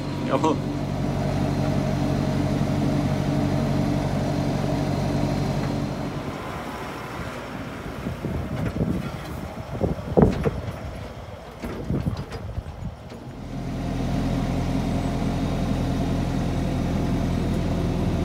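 Steady drone of a Fendt 311 tractor's engine heard from inside the cab, with a short laugh near the start. From about six seconds in the drone gives way to quieter, uneven sound with a few thumps, the loudest about ten seconds in. The cab drone returns a few seconds before the end.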